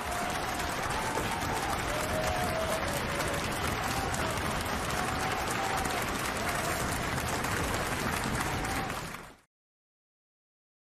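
Steady applause with a few faint calls over it, cutting off abruptly near the end.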